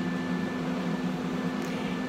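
Small electric fan running: a steady motor hum with a thin, faint high whine over it.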